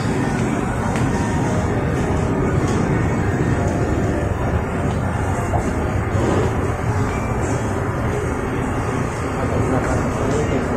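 Busy shopping-mall ambience: a steady din of background voices mixed with background music.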